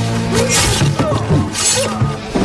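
Fight-scene film soundtrack: music playing under two loud shattering crashes, one about half a second in and another near the end.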